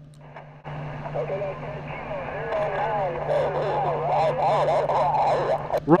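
Elecraft KX2 transceiver receiving on single-sideband on the 20-meter band: a weak, muffled voice from a distant station comes through band hiss and a low hum, which start about half a second in.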